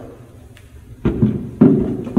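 Two dull knocks about half a second apart, with a short clatter after each, from things being moved about inside a magician's prop case during a search for a wand.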